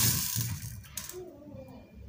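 Small seed beads clicking and rattling in a plastic plate as a thin copper wire scoops them up and threads them, loudest in about the first second, then trailing off to faint handling.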